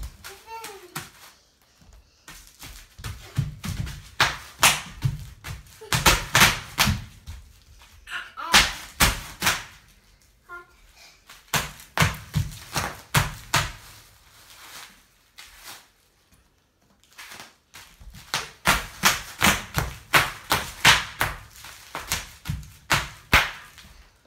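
A series of sharp pops, several a second, coming in about four runs with pauses between, the longest run near the end.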